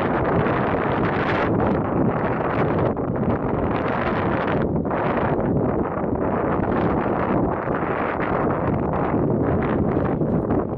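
Wind buffeting the microphone: a loud, steady rushing that rises and dips, as the bicycle rolls along a gravel track.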